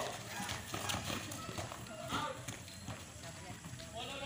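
Players running and kicking a ball on a concrete court: scattered footfalls and knocks of the ball, with shouting voices.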